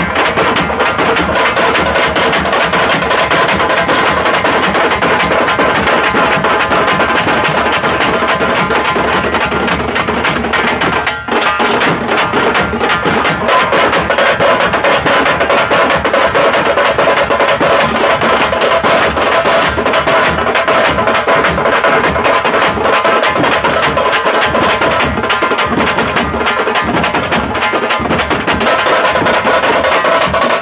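Tamate frame drums beaten with sticks by a group of drummers in a loud, fast, continuous rhythm, with a momentary drop about eleven seconds in.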